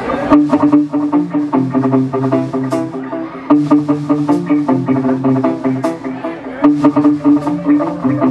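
Live band coming in on a song about a third of a second in: electric guitars, bass and drums playing a riff that repeats every few seconds.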